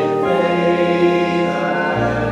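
Closing church music in held chords, choir-like. The harmony shifts about a quarter second in, and a deep bass note comes in at the end.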